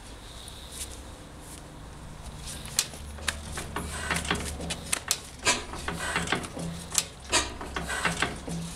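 A 1911 Tangye AA benzoline single-cylinder stationary engine being turned over by hand at the flywheel, catching about three seconds in and then running with a low hum and sharp beats about twice a second.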